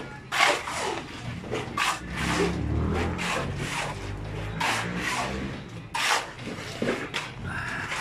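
Shovel and hoe blades scraping and chopping through wet concrete mix on the ground, in a string of short, irregular strokes.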